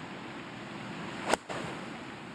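A golf club striking the ball on a full swing: one sharp, crisp crack about a second and a half in, over a steady outdoor hiss.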